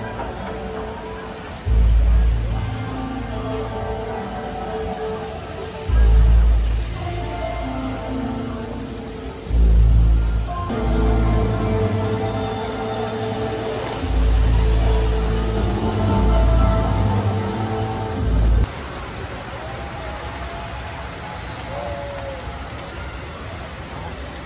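The Dubai Fountain show's music playing over its loudspeakers, with deep booms about seven times as it swells. The music stops suddenly about three-quarters of the way through, leaving a steady rushing hiss of the fountain's water.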